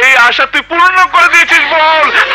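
A man laughing loudly in several drawn-out bursts.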